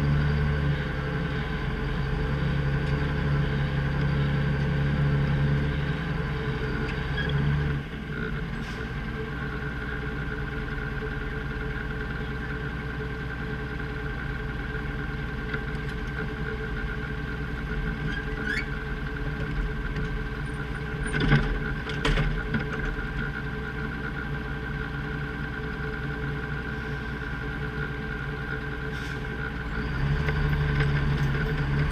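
Plow truck's Detroit engine running steadily, dropping to a lower, quieter note about eight seconds in. A couple of sharp clunks come about two-thirds of the way through.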